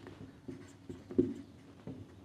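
Felt-tip marker writing on a whiteboard: a few short, faint strokes of the pen tip against the board.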